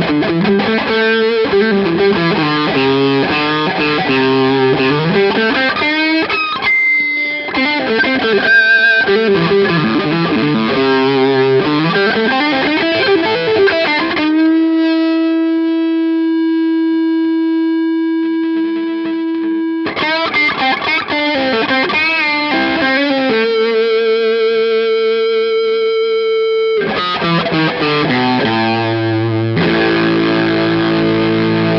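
Tom Anderson Bobcat Special electric guitar, its humbucker-sized P-90 pickups played with heavy distortion: fast lead runs sweeping up and down the neck. About halfway through comes one long sustained note held for several seconds, then more runs and a second held note with vibrato before the playing picks up again.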